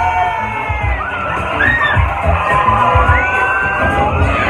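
Several riders screaming and whooping on a drop-tower ride, over loud music from the ride's soundtrack.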